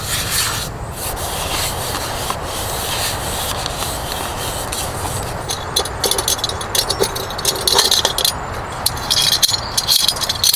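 Tissue rubbing round the inside of a small cup as it is wiped, a steady scratchy sound. From about halfway, quick metallic clicks and scrapes as a portable gas stove burner is unscrewed from its gas canister and its folding metal parts are handled.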